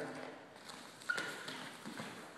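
Wrestlers' feet shuffling and bodies scuffling on a wrestling mat as the move is carried out: a few soft taps and knocks, with a short squeak about a second in.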